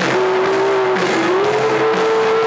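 Live rock band playing, with electric guitars and drums. A strong held note slides up in pitch a little over a second in and then holds.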